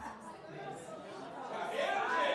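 Faint murmur of people chattering in a large hall, growing slightly louder near the end.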